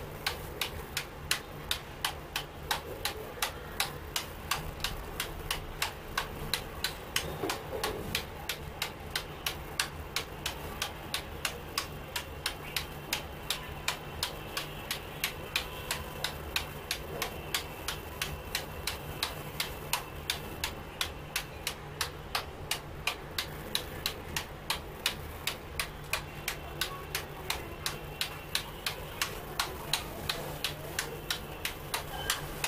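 A table tennis ball bouncing again and again on a computer keyboard held flat as a paddle: an even click about three times a second without a break.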